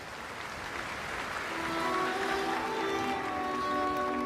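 Concert-hall audience applause, then about a second and a half in an orchestra begins the song's introduction with held, sustained notes that build in level.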